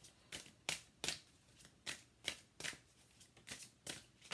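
A deck of oracle cards being shuffled by hand, the cards giving a faint series of short slaps, two or three a second.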